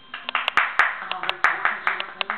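A quick, irregular run of hand claps, about a dozen sharp claps over a second and a half.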